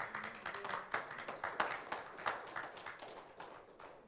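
Applause from a small congregation: a few people clapping unevenly, thinning out near the end.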